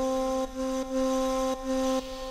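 Background music: a woodwind instrument playing one low held note, sounded again about four times at the same pitch.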